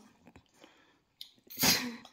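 A single sneeze, sharp and hissy, about one and a half seconds in.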